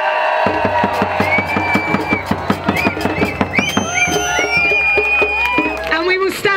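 A large hand-held drum struck with a beater in a fast, steady beat, about five strokes a second, starting about half a second in, with a crowd whooping and cheering over it.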